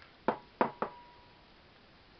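A spoon knocking three times in quick succession against the side of a stainless steel soup pot while stirring, the second knock leaving a brief ringing tone.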